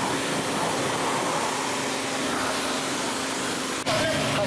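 High-pressure car-wash lance spraying water, a steady hiss with the pump's hum beneath it; it cuts off suddenly near the end.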